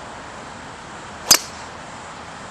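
Golf driver striking the ball off the tee: a single sharp crack a little over a second in.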